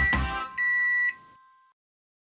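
Closing music stops about half a second in, then a single high electronic beep lasting about half a second, a microwave-style done signal.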